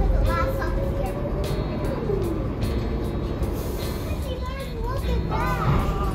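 Inside an airport shuttle bus: a steady low engine and road rumble, with a tone that falls in pitch about two seconds in. A child's high voice is heard briefly near the start and again toward the end.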